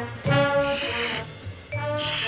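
Brassy band music playing from a cartoon jukebox, a run of held notes one after another.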